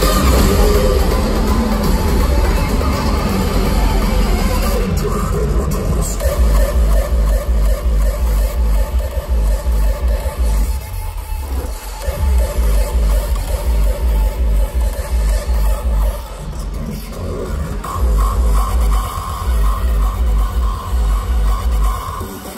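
Loud electronic dance music, hardstyle, played over a festival sound system and recorded from within the crowd, driven by a heavy kick drum. The kick drops out briefly about halfway through and again a few seconds later, then returns.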